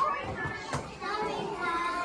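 Several young children's voices chattering over one another in a classroom, with one sharp tap a little under a second in.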